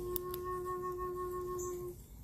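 Native American-style flute of Colombian coffee wood holding one long, steady low note, its low F# root, for nearly two seconds before stopping just before the end.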